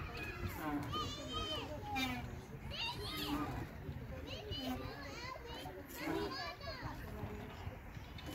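Children's voices calling and chattering at play, a string of short, high, rising-and-falling calls spread through the whole stretch, over a low steady rumble.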